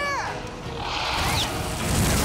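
Cartoon sound effect of a dragon breathing fire: a rushing whoosh that swells from about a second in and is loudest near the end, over background music.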